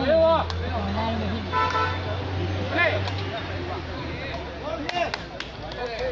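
Spectators shouting and calling out over a steady low hum. A short horn toot sounds about a second and a half in, and a few sharp taps come near the end.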